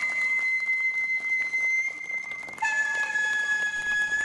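A shinobue, the Japanese transverse bamboo flute, holds one long high note, then steps down to a slightly lower held note a little past halfway.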